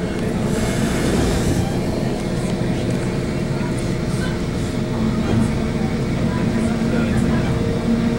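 Steady rumble of a moving Metrolink commuter train heard from inside a passenger coach, with a low droning hum that comes up about five seconds in.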